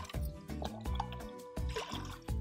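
Background music with a steady beat and held tones, over faint sounds of liquid.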